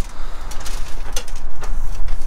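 A steady low rumble on the microphone, with a few light knocks and rustles as a large nutcracker figure is handled and set upright.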